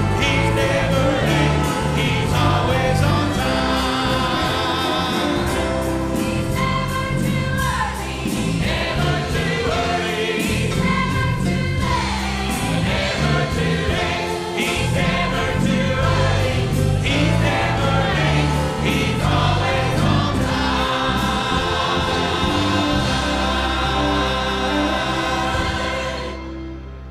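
Church choir singing a gospel song, accompanied by electric guitar.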